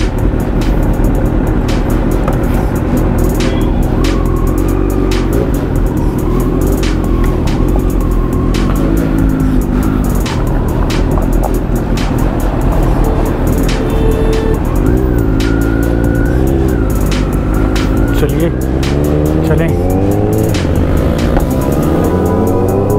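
Instrumental hip-hop beat over a motorcycle engine. The engine runs low at first, then near the end its pitch rises steadily as the bike pulls away and accelerates.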